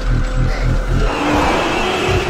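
Movie soundtrack: a score with an even, low pulsing beat that gives way about a second in to a loud, steady rushing noise.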